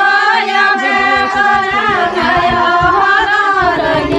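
A woman's voice singing a melody in long, wavering held notes, with a low repeating beat that comes in about a second in.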